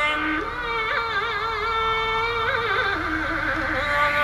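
Yosakoi dance music played over loudspeakers: a long held note with a slow vibrato, stepping down in pitch near the end.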